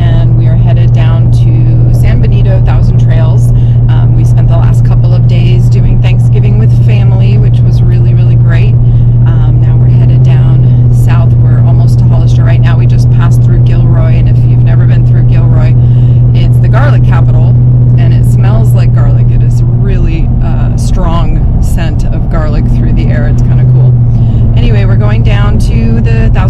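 Steady low drone of a truck driving, heard inside the cab, with a woman talking over it.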